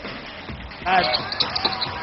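Basketball arena ambience on a TV broadcast: a low crowd murmur, with a commentator's voice coming in about a second in.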